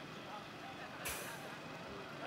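Faint background of distant voices and outdoor noise, with a short hiss about a second in.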